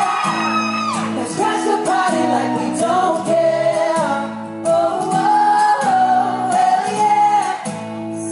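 Male pop vocal group singing live into handheld microphones over music with a steady beat.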